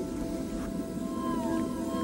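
Soft dramatic background score of sustained held notes, with one note sliding slowly downward a little past halfway.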